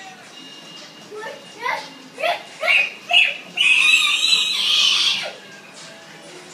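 A young child's voice: five short rising squeals about half a second apart, then one long, loud shriek lasting about a second and a half.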